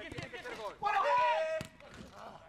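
A football being struck, with sharp knocks of the ball, the strongest about one and a half seconds in. Before it comes a man's short drawn-out shout, the loudest sound here.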